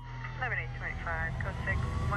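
Street ambience with a steady low vehicle rumble and faint voices in the background. Through it runs a thin wailing tone, like a distant siren, that slowly falls in pitch and then rises again.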